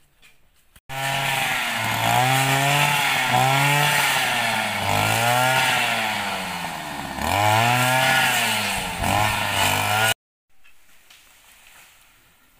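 Petrol brush cutter's engine running in tall grass, revving up and dropping back again and again. It starts abruptly about a second in and cuts off suddenly near the end.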